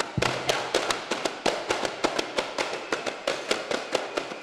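A group of daf frame drums struck by hand together in a fast, driving rhythm of sharp beats, a drum-only passage of a duff muttu performance.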